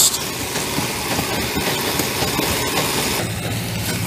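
Concrete pump's engine running steadily while concrete is pumped through the hose, a steady mechanical hum that turns a little more tonal about three seconds in.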